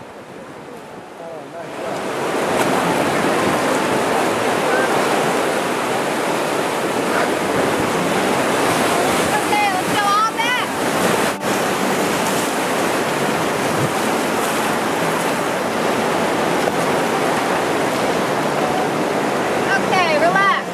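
River rapids rushing loudly around a whitewater raft, swelling sharply about two seconds in as the raft drops into the whitewater. About ten seconds in, a voice briefly calls out over the water.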